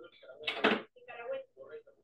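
Indistinct speech in short fragments, loudest about half a second in.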